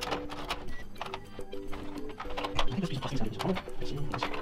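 Repeated light clicks and knocks of a metal PCIe riser cage, loaded with a long GPU card, being pressed down into a rack server chassis and bumping against a plastic part that stops it seating.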